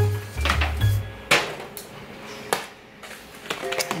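Background music with a deep bass line for about the first second, then three sharp knocks and clatters from kitchen dishes being handled on the counter.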